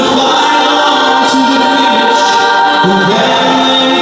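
A mixed choir of male and female voices singing held chords together.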